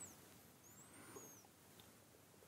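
Near silence: room tone, with a few faint, short, high chirps about a second in.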